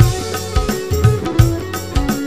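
Live dangdut band playing an instrumental stretch: a steady drum and bass beat about three pulses a second under electric guitar and keyboard, with no singing.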